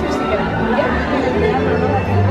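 Indistinct voices talking over steady background music.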